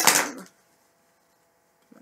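A loud breath out into a laptop microphone, a short rush of air that stops about half a second in. After it, a few faint mouth clicks near the end.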